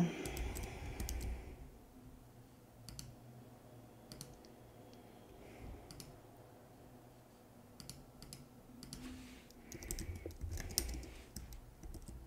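Scattered light clicks of a computer keyboard and mouse, a few strokes at a time with pauses between, while files are selected and copied; a dull knock or two sounds near the end.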